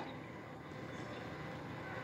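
Faint, steady background hiss with a low hum, the noise floor of the recording.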